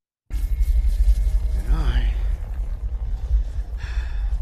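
Soundtrack of a movie battle scene played from a video clip: a loud, deep rumble starts suddenly just after the start and carries on throughout, with a brief voice-like sound gliding up and down about two seconds in.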